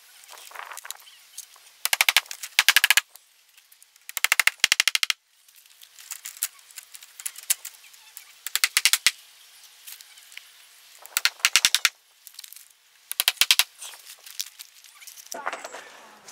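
Hand-held power driver fastening a strip of vinyl siding, running in five or six short bursts of fast, even clicking, each under about a second, with pauses between.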